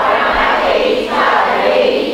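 Voices chanting a Pali Buddhist text together in a continuous, sing-song recitation.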